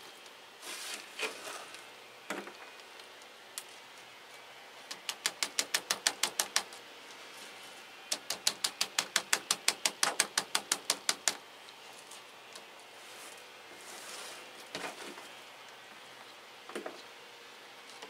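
Small plastic plant pot filled with coconut husk chips being tapped and jiggled, giving two runs of quick, even clicking, about six a second, the second run about three seconds long. A few single rustles and knocks of the chips being handled come before and after.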